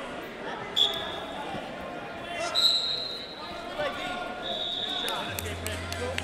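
Referee whistle blasts echoing in a large arena hall: a short blast about a second in, then two longer, steady blasts of about a second each, over a constant din of voices.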